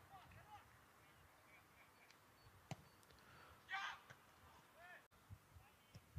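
Near silence: faint outdoor ambience, with one brief click and a faint call a little before the four-second mark.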